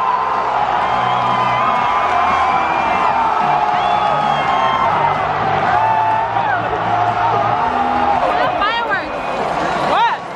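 Large stadium crowd singing together and cheering: many voices hold sung notes over a continuous din. A few rising whoops come near the end.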